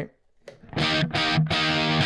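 Distorted electric guitar chords strummed repeatedly through a Marshmello Jose 3Way 50-watt mod amp head, starting just over half a second in, heard through a Greenback speaker emulation. The amp's push-pull knob is pulled out, disconnecting the first gain stage for a little more drive.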